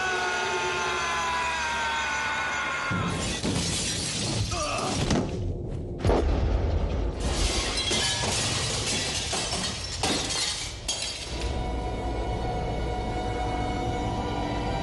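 Glass shattering and crashing in a dense, loud burst that starts suddenly about six seconds in and goes on for several seconds, as a cabinet's glass panes break apart. Before it come gliding, falling tones over a low rumble, with a film score under it all.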